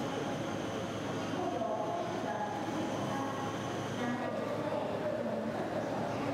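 Steady exhibition-hall background noise: a constant hum and hiss with a thin high whine, and voices of people talking in the distance.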